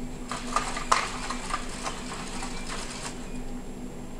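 NAO humanoid robot stepping as it turns in place, its feet and joints giving irregular light clicks and taps on a hard floor, over a steady low hum.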